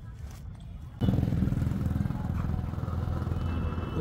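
A motor engine running steadily with a fast low pulse. It starts abruptly about a second in and is much louder than the faint rumble before it.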